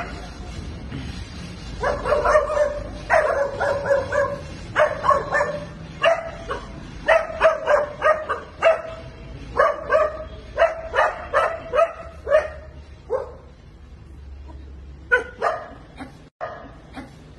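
Dogs barking at a monkey, a long run of short barks about one or two a second. A brief lull comes near the end before two more barks.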